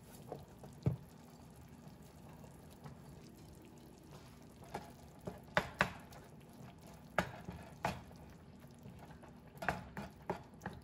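A wooden spatula stirs crushed tomatoes and browned meat in a nonstick frying pan, with a scatter of short knocks and scrapes of the spatula against the pan, most of them in the second half.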